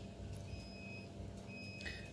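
Quiet background ambience: a steady low rumble and hum, with a faint high-pitched beep repeating about once a second.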